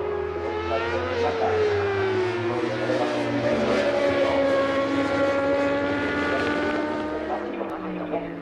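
A 1000 cc superbike racing motorcycle being ridden through a series of bends. Its engine pitch falls about a second in as it slows, then holds steadier as it drives on. It is loudest around the middle and eases off near the end.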